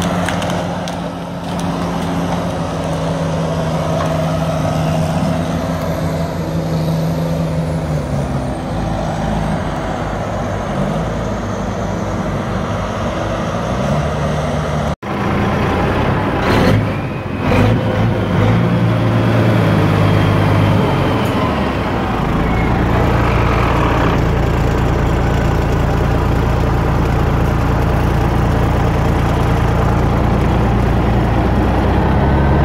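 Heavy diesel logging machinery, a knuckleboom log loader and a skidder, running, the engine speed rising and falling as the loader works. After a sudden cut halfway through, a few knocks, then a large diesel truck engine idling steadily.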